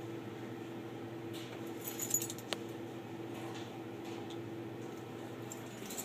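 Dishwasher being opened and its wire dish rack handled: a few light metallic clinks about two seconds in and one sharp click, over a steady low hum.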